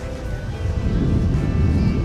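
Background music with steady held notes, under a low rumble that swells about half a second in: wind and handling noise on a camera being carried across the beach.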